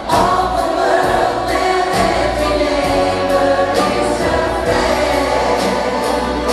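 Live pop band and orchestra performing a song, with many voices singing together in chorus, heard from within the audience of a large hall.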